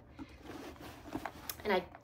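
Felt organizer insert being pulled out of a Fauré Le Page coated-canvas tote bag: quiet rustling and sliding of fabric against canvas, with a couple of faint clicks.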